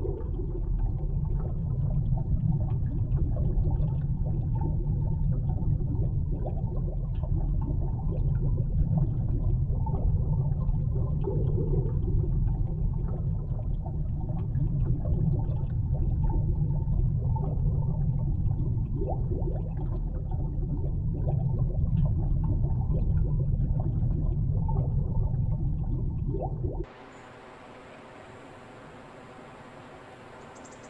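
Underwater ambience: a loud, muffled low rumble of water with scattered small clicks and bubbling. About 27 seconds in it cuts off abruptly to a much quieter steady hiss with a thin high whine.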